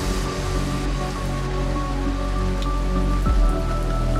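Beatless ambient intro of an uptempo hardcore electronic track: long held synth tones and a low bass drone over a steady hiss. A short low thump comes a little after three seconds in.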